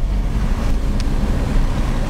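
Steady rumble of a car driving on a wet road, heard from inside the cabin: engine and tyre noise, with a brief tick about a second in.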